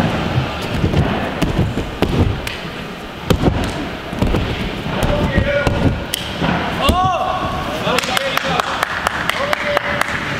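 Bare feet running and rebounding on an inflatable airtrack, a quick series of dull thuds from take-offs and landings during a tumbling run of flips. A voice shouts about seven seconds in.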